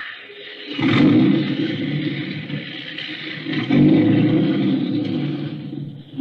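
Radio-drama sound effect of a taxi: a sudden knock just under a second in, then a car engine rumbles steadily as the cab pulls away, louder about two-thirds of the way through.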